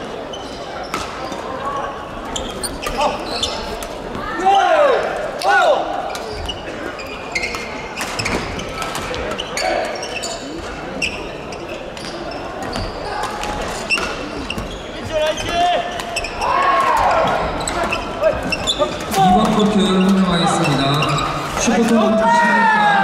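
Busy badminton hall: a stream of sharp clicks from rackets striking shuttlecocks on several courts, with occasional squeaks of court shoes and the chatter of players, all echoing in the large hall.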